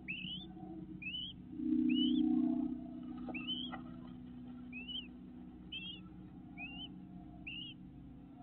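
A bird calling over and over: a short whistle that rises and then just turns down, about once a second, eight calls in all. A brief low hum, the loudest sound, swells about two seconds in, and two faint clicks follow about a second later.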